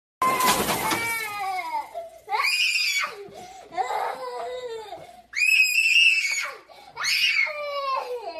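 A young girl screaming and wailing in a temper tantrum, in repeated high-pitched shrieks with falling pitch. A loud clattering crash in the first second comes as a wooden book display topples over.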